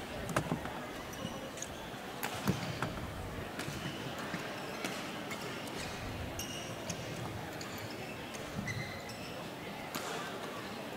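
Sports-hall ambience: a crowd murmur with scattered knocks and thuds, the loudest about half a second and two and a half seconds in, and a few short high squeaks.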